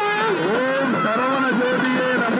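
Nadaswaram playing a sliding, ornamented melody, with occasional thavil drum strokes underneath.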